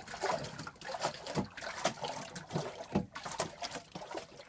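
Water sloshing and splashing in irregular surges in a clear acrylic wave tank as waves are pushed along it by hand with a wave-maker bar, rising and falling through a model oscillating-water-column chamber.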